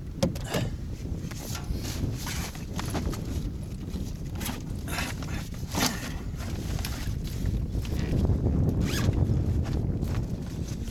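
Low rumble of wind on the microphone with scattered rustles and light knocks. The rumble grows heavier near the end.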